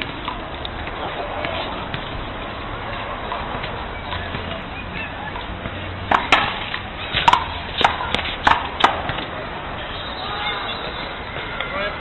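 A ball being punched and smacking off a concrete wall and the pavement. There are about seven sharp slaps in quick succession a little past halfway through.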